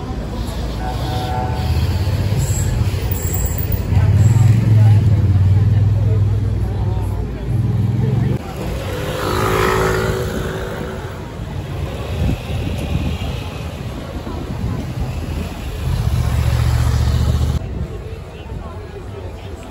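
Busy pedestrian street ambience: passers-by talking over a deep rumble that comes and goes, with a brief louder pitched sound about halfway through.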